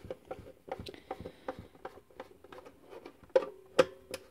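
A hand screwdriver turning a screw out of a portable TV's plastic case makes a run of small, irregular clicks and creaks. A faint squeak sets in near the end, along with two sharper clicks.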